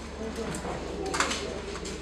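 Faint background chatter and room hum, with a few light clicks about a second in.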